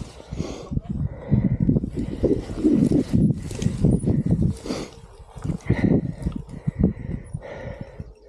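Mountain bike on a rutted, muddy trail: dense, irregular knocks and rattles from the bike and tyres with rushing noise, easing briefly about halfway through.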